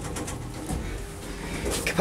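ThyssenKrupp machine-room-less lift's car doors sliding shut, over a steady low hum in the cab.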